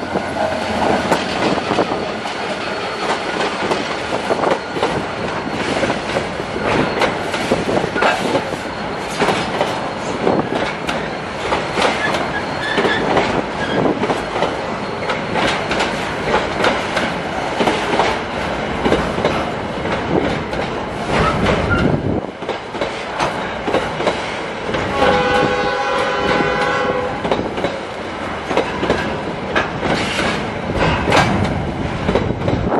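Fepasa EMD SD39 diesel locomotive passing close by at the head of a container freight train, followed by loaded container flat cars rolling past with a steady clatter and clickety-clack of wheels over the rail. Near the end a steady pitched tone sounds for about two seconds.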